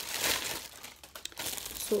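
Clear plastic packaging crinkling as it is handled, dying down about halfway, with a few light rustling ticks after.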